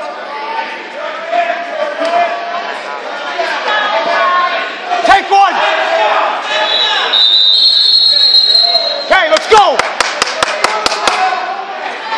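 A referee's whistle blows one steady note for about two seconds near the middle, stopping the wrestling, over gym voices and shouting. Soon after, a quick run of about nine sharp knocks sounds on the gym floor.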